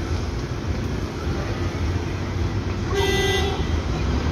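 A single short vehicle horn toot about three seconds in, over a steady low rumble of passing road traffic.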